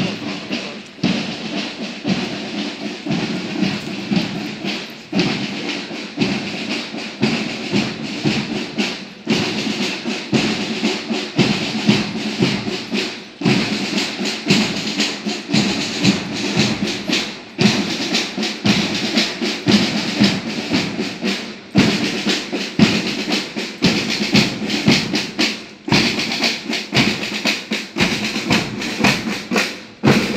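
A military marching band playing a march, with snare drums and bass drum prominent.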